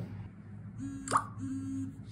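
Smartphone notification sound as the OTP text message arrives: one short rising pop about a second in, over a faint steady tone.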